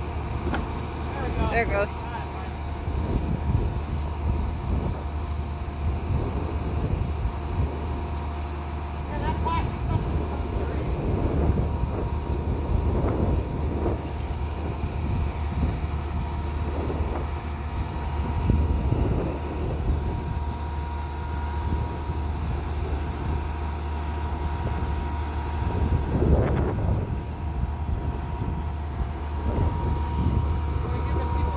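Engine of a flatbed crane truck running steadily, with a faint steady whine over it, while its truck-mounted knuckle-boom crane holds a load.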